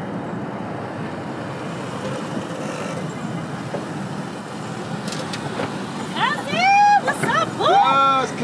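A Dodge Grand Caravan minivan pulling up slowly and stopping, a low steady vehicle noise. About six seconds in, loud, high-pitched excited calls of greeting start, each rising and falling in pitch, several in quick succession.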